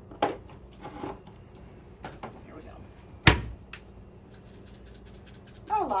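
Spice jars clinking as they are moved about in a kitchen cabinet, then one sharp knock a little over three seconds in as the cabinet door shuts. From about four seconds in comes a fast run of light ticks: a spice jar being shaken, sprinkling red pepper flakes into a plastic mixing bowl.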